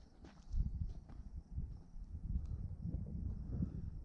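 Breeze buffeting an outdoor microphone: an uneven low rumble with a few faint ticks.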